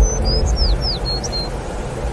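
A small bird singing a quick run of about eight short, high whistled notes, most sliding downward, over the first second and a half. Underneath is a steady rushing background with a low rumble.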